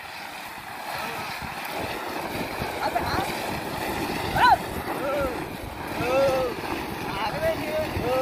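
Short, repeated shouted calls from the drivers urging on a yoked pair of Ongole bulls as they drag a weighted tyre. Under them runs a steady rough noise from the tyre scraping over concrete. The loudest calls come about halfway through and a second and a half later.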